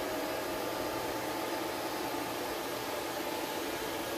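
Cooling fans of running ASIC cryptocurrency miners and the duct fan exhausting their heat, a steady whir with a faint hum underneath.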